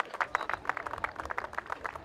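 A small group applauding: dense, irregular hand claps.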